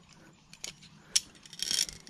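A hiker's movements over bare rock beside a rope handrail: a couple of sharp clicks about half a second and a second in, then a short scraping shuffle near the end, the loudest sound.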